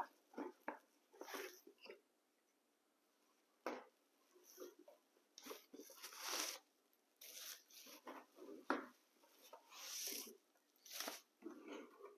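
Plastic bags and bubble wrap crinkling and rustling in short, scattered bursts as packed accessories are handled and pulled from a cardboard box.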